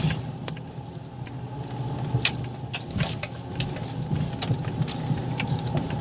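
A vehicle engine running with a steady low hum, heard from inside a pickup truck's cab, with scattered sharp rattles and clicks as the truck is towed out of mud on a chain by a tractor.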